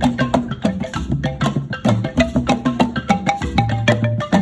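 Large wooden xylophone: heavy plank keys struck quickly with wooden sticks, several notes a second, playing a repeating melodic pattern.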